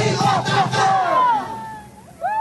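A group of voices shouting and whooping together, many short falling yells at once, over drum-led band music that fades out a little past halfway.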